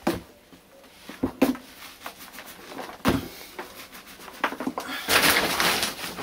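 Bare hands crumbling and stirring peat-based potting substrate in a plastic bucket: a dry, crumbly rustle with a few knocks against the bucket, the rustle growing loudest near the end.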